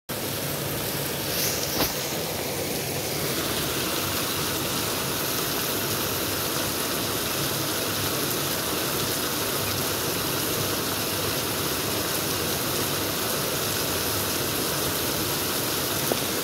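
Heavy rain pouring onto a paved street, a steady, even hiss of falling rain and running water. Two short ticks come about one and a half seconds in.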